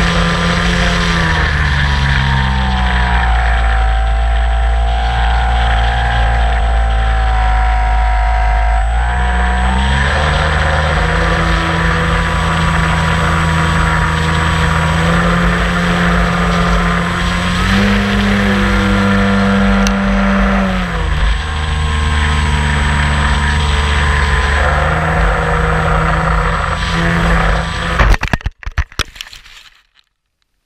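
The motor of an AcroWot radio-controlled model aeroplane runs in flight, its pitch falling and rising with the throttle. Near the end come a rough landing in grass, a burst of knocks and clatter, then the sound cuts off.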